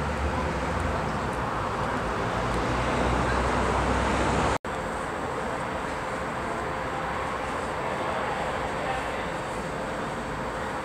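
Outdoor city background: a steady wash of distant traffic noise with a low rumble, broken by an abrupt cut about halfway through, after which a lighter, steady background noise continues.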